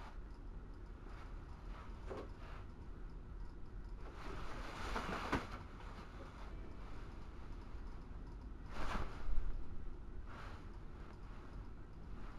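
Faint low hum with a few brief rustles of movement close to a small camera's microphone: a soft one about four seconds in and a louder one about nine seconds in.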